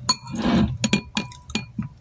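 A metal spoon clinking against a ceramic bowl: several sharp, ringing clinks, with a brief louder noise about half a second in.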